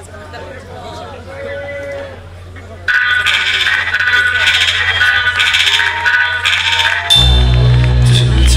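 Crowd voices, then about three seconds in a nu-metal band's intro starts suddenly and loudly, pitched high and pulsing. About seven seconds in, heavy bass and drums come in under it.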